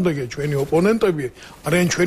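A person speaking continuously: studio talk-show speech only.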